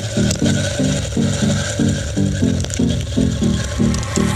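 Background music: a repeating low riff of about three to four notes a second with a dense scraping percussion rhythm, the opening of a Latin salsa-style track.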